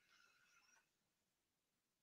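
Near silence: a gap in the audio between stretches of speech.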